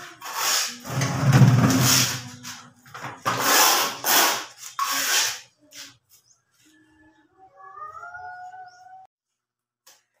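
Steel trowel scraping wet cement mortar against concrete in a series of strokes over the first five seconds, then stopping.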